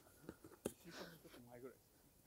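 Near silence, with a faint voice murmuring about a second in and a single soft click shortly before it.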